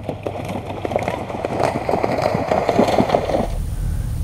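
A horse's hooves splashing through shallow water at a cross-country water jump: a dense, crackling run of splashes that stops suddenly near the end.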